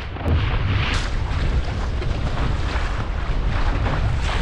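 Wind buffeting the microphone in a steady low rumble, over the hiss and wash of choppy waves around a small sailing dinghy.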